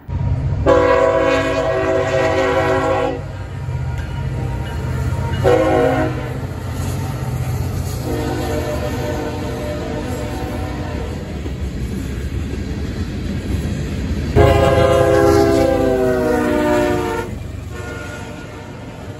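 Diesel freight locomotive horn sounding four blasts, long, short, long, long, over the low rumble of the moving train; the last blast is the loudest and falls in pitch as it ends.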